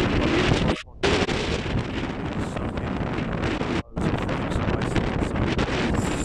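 Strong wind buffeting the microphone in a dense, loud rumble that cuts out briefly twice, about a second in and again near four seconds.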